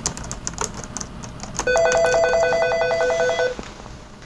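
Laptop keyboard typing, then an office desk phone ringing with an electronic trill: a rapidly pulsing pair of tones that starts about a second and a half in, runs for about two seconds and stops before the end.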